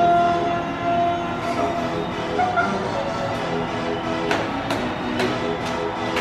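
Pop music track with long held notes, then a steady beat of sharp strikes about twice a second from about four seconds in.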